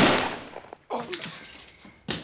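A single loud gunshot right at the start, its echo dying away over about half a second, followed by a few faint knocks about a second in.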